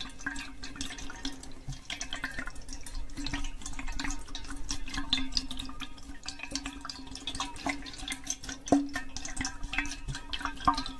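Water sloshing and dripping inside an Owala water bottle as it is tilted slowly close to the microphone, with small irregular splashes and clicks and one sharper knock near the end. A steady low hum runs underneath.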